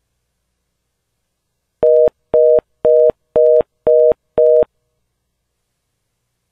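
Telephone fast busy signal heard over the phone line: six short beeps of a steady two-note tone, about two a second, starting about two seconds in. The call attempt has failed to connect.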